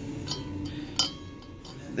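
Two light metallic clinks as a steel bit is pushed into the cast intake port of an LS cylinder head and taps against the port wall, over a faint low hum.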